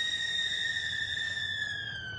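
A woman's long, high-pitched scream held on one steady note, dipping slightly in pitch and fading near the end.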